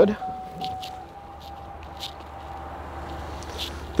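A steady low hum with a faint high tone held for about three seconds, and a few soft clicks and rustles as someone climbs out of a car through its open front door.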